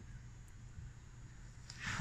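Quiet shop room tone with a steady low hum and one faint tick about half a second in; the hand-rotated winch housing makes no clear sound.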